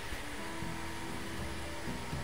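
Small cooling fan on the CNC machine's power supply running with a steady whir, a faint steady whine over it.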